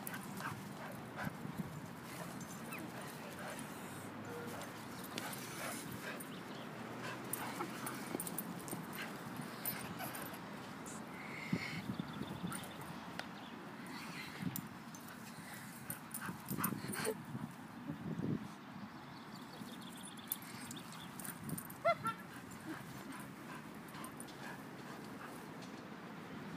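A chihuahua and two larger dogs playing rough on grass, quiet overall: irregular scuffles and thuds, with a few brief high-pitched dog whines or yips about four seconds before the end.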